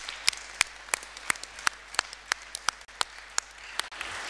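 Audience applauding, with one pair of hands clapping close to the microphone at a steady pace of about three claps a second; the close claps stop shortly before the end.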